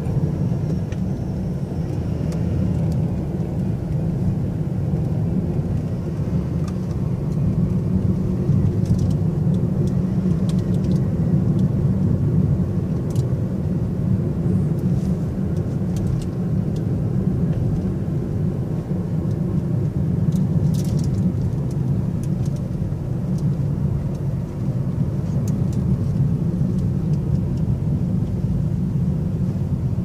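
A car driving, heard from inside the cabin: a steady low rumble of engine and tyres on the road.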